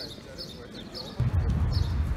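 A small bird chirping over and over in short high notes. A little over a second in, wind starts buffeting the microphone with a loud low rumble.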